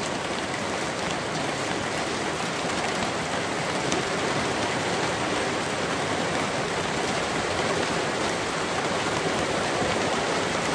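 Heavy rain pouring down steadily, with a few sharp ticks of single drops.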